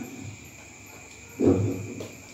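A pause with faint steady hum from the sound system, then, about one and a half seconds in, a short low vocal sound from a man, like a grunt or murmur, lasting about half a second.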